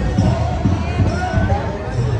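Repeated low thuds, a few a second at uneven spacing, under faint voices.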